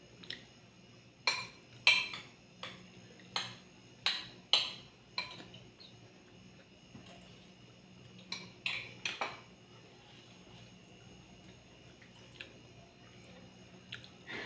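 Metal spoons clinking and scraping against ceramic bowls and plates while food is served and eaten: a run of sharp clinks in the first five seconds, then another cluster around eight to nine seconds in.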